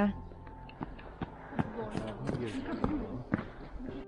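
Footsteps on a wet, snowy stone path, an irregular series of soft steps, with indistinct voices in the background.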